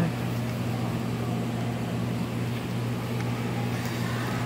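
Steady low electrical machine hum, a few fixed low tones with a faint even hiss and no distinct events.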